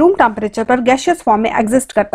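Speech only: a woman narrating steadily in Hindi.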